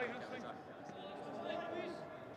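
Faint shouting from players on the pitch, carrying across a near-empty stadium with no crowd noise.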